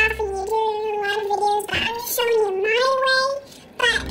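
A high voice singing long, drawn-out notes with no backing under them, with a short break near the end before backing music comes back in.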